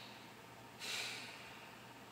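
A man breathes out heavily once, about a second in, a short weary sigh through the nose that shows his reluctance to work.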